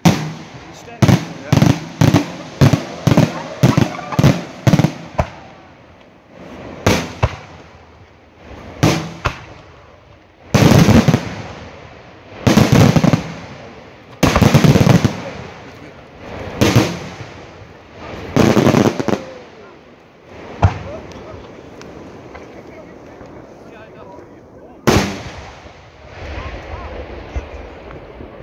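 Fireworks display: a rapid run of sharp bangs, about two a second, for the first five seconds, then scattered bangs and a string of longer bursts lasting about a second each. A last bang comes near the end.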